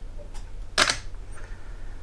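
Canon DSLR shutter firing for a 0.4-second exposure: a faint click as it opens, then a louder clack a little under half a second later as it closes.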